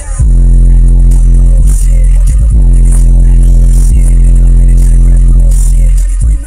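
A car stereo with three 18-inch subwoofers playing a bass-heavy track, heard inside the car's cabin. A deep bass note comes in just after the start and holds steady and very loud.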